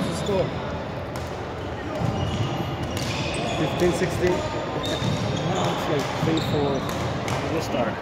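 Badminton rackets striking shuttlecocks: sharp irregular hits, roughly one every second or so, in a large gym hall over the background chatter of players.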